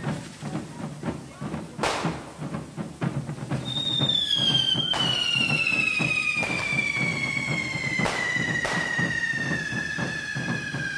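Hand-held carretilla fireworks crackling and hissing as they throw sparks, with a few sharp bangs. From a little over a third of the way in, a long whistle falls slowly and steadily in pitch.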